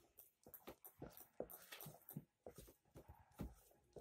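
A metal spoon stirring a wet egg batter in a plastic bowl: soft, irregular clicks and scrapes against the bowl's side, several a second.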